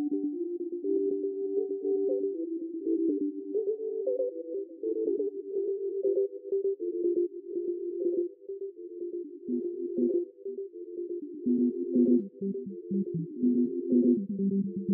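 Live electronic noise music from a tabletop setup of mixer, sound module and effects pedal: a cluster of close, sine-like tones that shift in pitch and are chopped into rapid flickering pulses. A thin higher steady tone fades out about four seconds in, and near the end the pitches step down lower.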